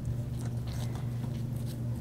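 Faint, soft squishing and scraping of a spatula spreading icing over a cake, a few light strokes, over a steady low hum.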